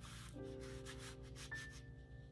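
Paper rubbing and rustling as journal pages and cards are handled, over faint soft background music with held notes.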